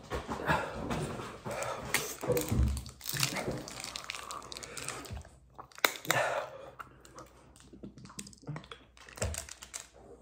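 Busy clicking and clattering of things being handled at a table, with wordless pained vocal sounds. About six seconds in comes a single sharp click as the cap of a plastic sports-drink bottle is twisted open.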